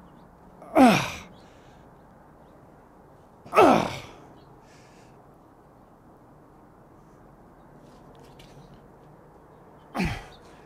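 A man's voice straining twice, about a second and three and a half seconds in: short exhalations that fall in pitch, made with the effort of squeezing hand pliers that cannot cut through the heavy cable.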